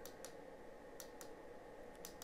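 A few faint, short clicks of the small push-buttons on a Ferguson Ariva T30 DVB-T decoder's circuit board, pressed to step through channels.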